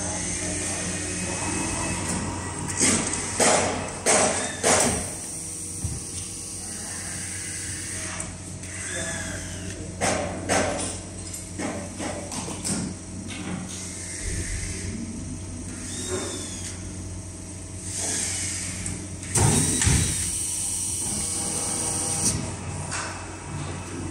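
Leather lamination press cycling: the work tray shuttles into the press and back out, with sharp mechanical knocks in clusters and a hiss near the end, over a steady machine hum.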